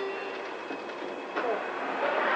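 Tail of the lower second note of a two-tone elevator arrival chime, then the steady running noise inside a Schindler traction elevator car as it stands at the floor, with a single click about a second and a half in.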